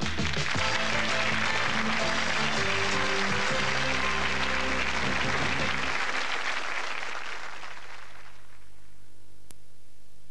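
Game show theme music with studio audience applause over it, both fading out about eight seconds in, leaving a faint steady hum.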